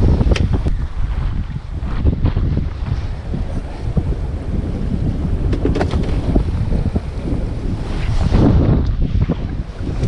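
Strong wind buffeting the microphone, a dense low rumble, with choppy water splashing around the boat. Scattered short knocks and clicks cut through it, and a louder gust swells near the end.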